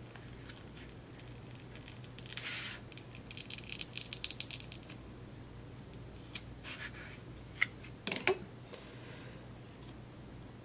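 A thin metal spatula scraping and clicking against a blush pan and its plastic insert as the pan is pried loose. There is a short scratchy scrape a couple of seconds in, then a run of quick ticks, then a few sharp single clicks later on.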